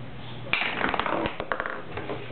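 A golf club hitting a ball: a sharp knock about half a second in, followed by a quick run of lighter clicks and taps for about a second.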